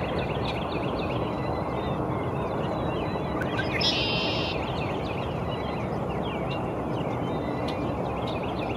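Several songbirds giving many short chirps over a steady low background noise. About four seconds in comes a louder red-winged blackbird song: short rising notes running into a brief buzzy trill.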